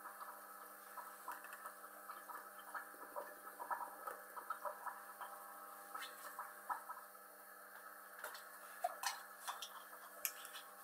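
Aquarium filter humming steadily, with many small irregular ticks and drips of moving water over it.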